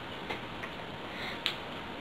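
A few light clicks of beads and fishing line being handled while a knot is tied in a seed-bead bracelet, the sharpest about a second and a half in, over a steady background hiss.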